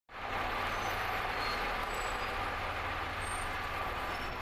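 Steady traffic noise of cars idling and creeping in line through a parking garage exit: a constant din with a low rumble underneath, heard inside the enclosed garage.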